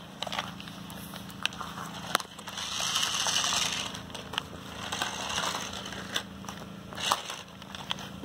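New Bright 1/24 scale toy RC truck driving over dirt and gravel: its small electric drive whirs in two louder spells around the middle, with scattered crunching clicks from stones and twigs.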